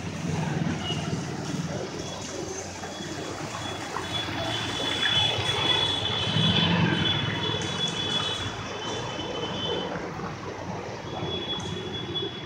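Vehicles passing along a waterlogged street at night, engines rising and falling twice as they go by. A steady high-pitched tone sounds through most of it, stopping briefly near the end.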